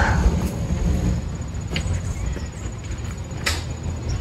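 Wind buffeting the microphone as a low, uneven rumble, with a few faint clicks over it.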